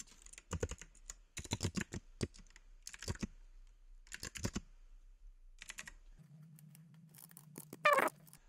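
Typing on a computer keyboard in several short bursts of key clicks with pauses between them. A low steady hum comes in for about the last two seconds.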